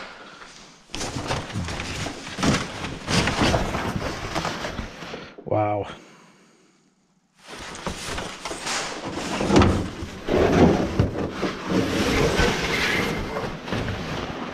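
Cardboard box and brown packing paper rustling and crinkling as a carbon-kevlar front bumper is dug out of its packing and lifted from the box, with a brief drop to near silence a little past the middle.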